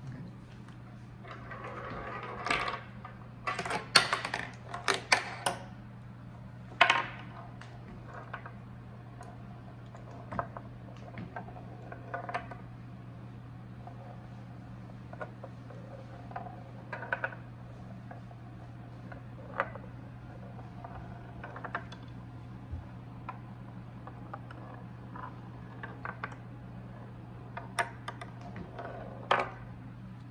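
A small ball running down a wooden roller coaster's zig-zag ramps on a timed run. A burst of loud clattering knocks comes in the first several seconds, then single light clicks every second or two as the ball strikes the wooden track.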